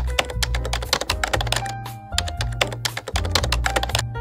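Rapid computer-keyboard typing clicks, a typing sound effect, over background music with a steady bass line and a melody; the clicks stop near the end.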